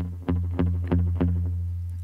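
Telecaster-style electric guitar: a low note picked repeatedly, about five times at roughly three a second, the last left to ring. The picking hand's palm rests on the bridge, partly muting the strings to deaden the sound and give it a darker tone.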